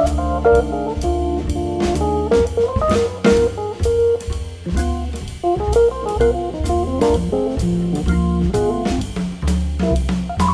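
Instrumental small-combo jazz: a quick single-note solo line over a strong bass line, with a drum kit and cymbals keeping a steady beat.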